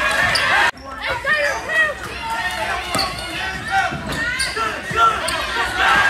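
Basketball bouncing on a gym floor, a few sharp bounces, with players and spectators shouting in the hall. The sound drops out abruptly just under a second in, then resumes.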